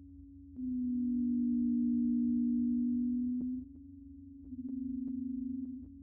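Computer-synthesised low sine tones. A steady tone hums under everything. A slightly lower, louder tone swells in about half a second in and holds for about three seconds, then a softer tone with a fast flutter comes in near the end, with a few faint clicks.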